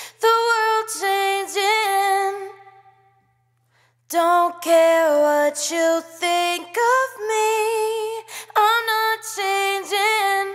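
A solo female vocal hook sample sung a cappella, playing back: a short sung phrase, a pause of about a second, then a longer run of sung phrases.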